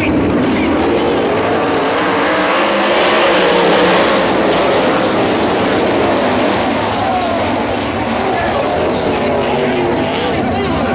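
A pack of wingless 360 sprint cars' V8 engines accelerating hard at the start of a race, many engines at once climbing in pitch. The sound swells to its loudest about three to four seconds in as the field goes by, then eases slightly.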